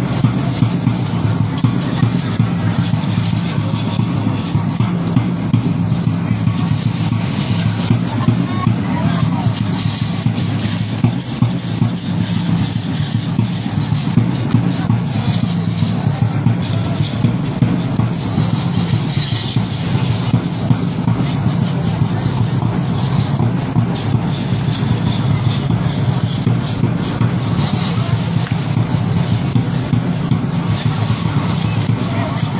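A large drum beaten without a break to accompany a dance, with voices mixed in.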